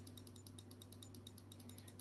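Near silence: room tone with a low steady hum and faint, evenly spaced ticks, about ten a second.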